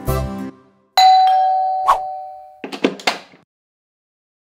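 A cartoon bell-chime sound effect: a sudden bell-like ding about a second in that rings and fades over about a second and a half, with a second strike partway through. A few short sounds follow it. A music phrase ends just before the chime.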